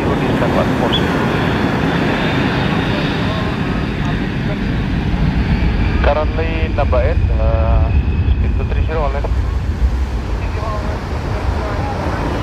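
Boeing C-17 Globemaster III's four Pratt & Whitney F117 turbofan engines on landing: a loud, steady jet rumble with a thin high whine. A deeper low rumble swells about six seconds in and eases off near the end.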